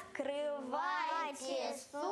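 Children's voices, with a woman's voice among them, singing a Russian folk carol (kolyadka) without instrumental accompaniment. The pitch rises and falls on each syllable.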